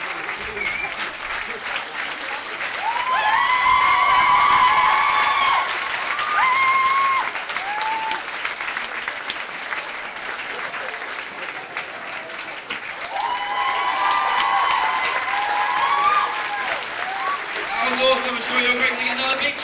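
Audience clapping, with high-pitched whoops and cheers rising over the clapping twice: a few seconds in, and again near the end.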